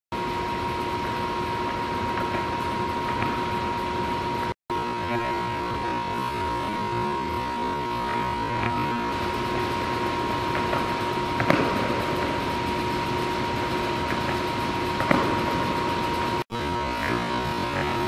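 Steady hum with two constant tones, like machinery or ventilation running in a large hall, broken by two brief sharp knocks and two momentary drop-outs.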